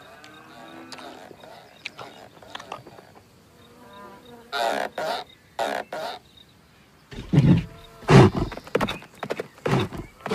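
Wordless voice sounds from cartoon characters or creatures: short pitched calls that stay quiet at first. A few louder ones come midway, then a run of loud, low bursts in the last three seconds.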